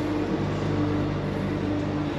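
Small single-cylinder motorcycle engine, a Honda Grom SP, idling steadily with an even hum.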